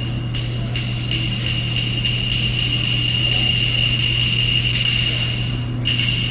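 A steady high-pitched tone with a quick, even clicking of about three clicks a second, over a low steady hum.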